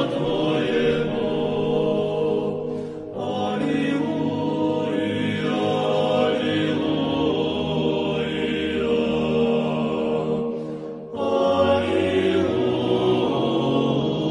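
Background music of slow vocal chant: voices holding long sustained notes in phrases, with brief pauses about three seconds in and again near eleven seconds.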